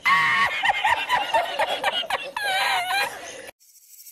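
A man laughing uncontrollably in a high-pitched, wheezing fit, his voice squeaking and breaking up rapidly. The laughter cuts off suddenly about three and a half seconds in.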